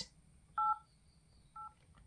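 Smartphone dialer keypad beeping twice as the 8 key is pressed: two short touch-tone beeps, each a pair of notes, the second fainter and shorter.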